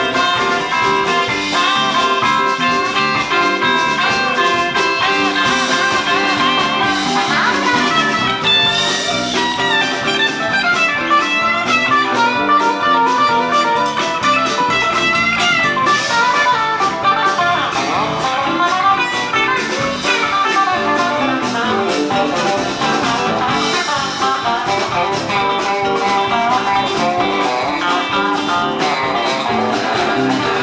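Live rock band with electric guitars, electric bass and drums playing an instrumental stretch, a lead electric guitar line with bent notes running over the rhythm.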